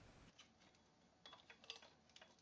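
Near silence, with a few faint light clicks in the second half.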